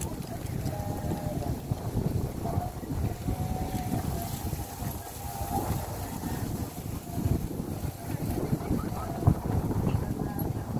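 Wind rumbling on a handheld camera's microphone, with faint distant voices over it.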